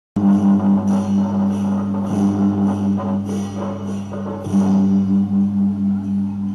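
Taiwanese Beiguan ensemble music: a steady held low note with regular percussion strikes, about one to two a second.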